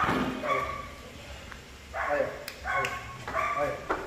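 Goats bleating, about four short calls: one at the start and three close together in the second half.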